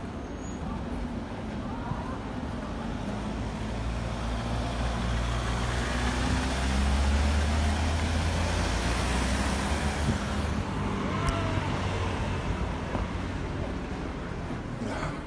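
Street traffic, with a van passing close by: its engine hum and tyre noise build to their loudest a little past the middle, then fade back into the general traffic.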